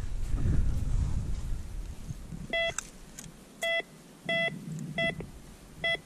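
Metal detector giving short, identical beeps, five of them at irregular intervals in the second half as the search coil passes over a buried metal target, after some low rustling near the start.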